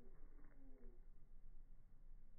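Faint dove cooing: a short phrase of a few soft, low notes in the first second.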